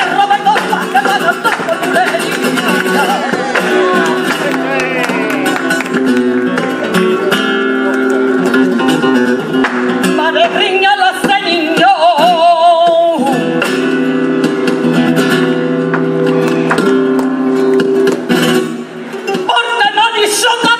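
Flamenco bulerías: a female flamenco singer (cantaora) singing a wordless, melismatic line over flamenco guitar accompaniment, with a long wavering held note about halfway through.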